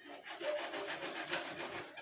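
Paper rustling as a printed electricity bill is handled and shifted, a continuous run of dry crinkling.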